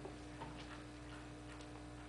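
Faint, scattered small ticks and clicks, a handful over two seconds, over a steady electrical hum in a large hall.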